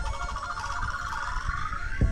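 Music played loud through a pair of ported speaker cabinets with Fane 12-250TC 12-inch full-range drivers: a thinned-out passage with a synth sweep that dips and then rises, the full bass and beat coming back in just at the end.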